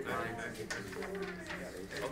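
Indistinct, murmured voices of people talking quietly in a small classroom, with a low, drawn-out hum-like voice in the middle.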